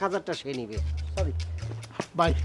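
A man's short vocal utterances over a background music bed of low, held bass notes that change every half second or so.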